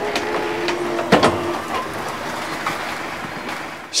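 Inside a city minibus standing at a stop: the engine runs steadily with a low hum, and short clicks and rattles come from the cabin, with one sharp clack about a second in.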